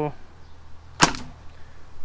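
A single shot from an electric gel blaster (Wells CQB, nylon version with a stock V2 gearbox): one short, sharp crack about a second in, with a faint second snap just after it.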